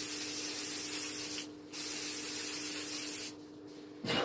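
Aerosol can of Lacura hairspray spraying in two long hisses, with a short break about a second and a half in.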